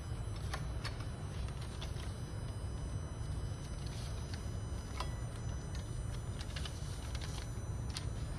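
Steady low background hum, with scattered light clicks and rustles as hands feed label stock over a rewinder's aluminium rollers and guide bar.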